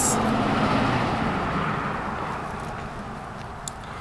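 A car going past on a nearby road: its tyre and engine noise is loudest at first and fades steadily away.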